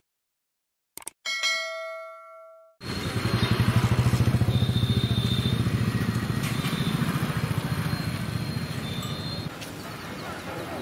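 Two mouse-click sound effects, then a bright bell-like notification chime that dies away over about a second and a half. About three seconds in, the sound cuts to steady street noise with a low, rapid pulsing.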